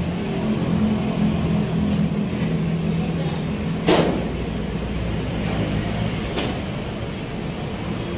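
A steady low mechanical hum, with a sharp click about four seconds in and a fainter one later.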